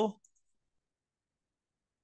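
Near silence: the last syllable of speech cuts off at the start, and the recording then drops to dead silence.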